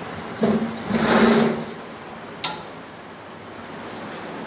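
Hydraulic paper plate making machine running, its pump motor steady underneath; a hum with a hiss swells for about a second, then a single sharp click comes about halfway through.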